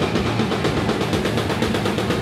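A heavy rock band playing live in a fast section: rapid, evenly spaced drum hits under electric guitars and bass.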